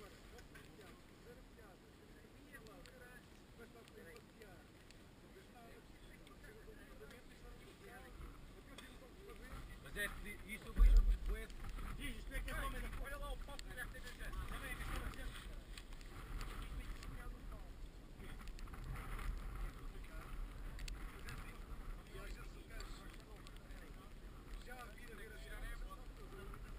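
Wind buffeting an outdoor camera microphone, growing stronger a little before halfway, with one sharp knock on the camera or its mount a little before halfway.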